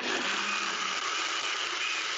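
NutriBullet Pro 900-watt personal blender switching on abruptly and running at a steady whirr, blending a spinach artichoke dip.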